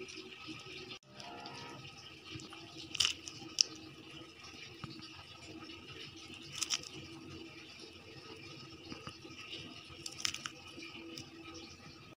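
Pot of turkey broth with cabbage simmering, with a few brief plops and splashes as diced turkey meat is dropped in, over a faint steady hum.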